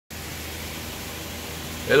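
Steady outdoor background hiss with a faint low hum underneath.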